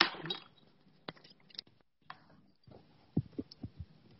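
Handling noise from a wireless earbud being fiddled with and reconnected after it switched off: a sharp click at the start, scattered faint clicks, a brief cutout of the audio, then a handful of dull low thumps near the end.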